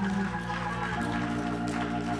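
Organ playing held chords behind the sermon, the chord changing a quarter second in and again about a second in.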